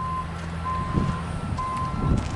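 Vehicle reversing alarm beeping about once a second, with a low rumble of wind on the microphone underneath.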